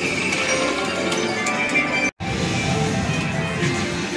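Aristocrat Dragon Link Golden Century slot machine playing its free-games music and reel-spin sounds, with short clicks as the reels stop. The sound cuts out completely for an instant about two seconds in.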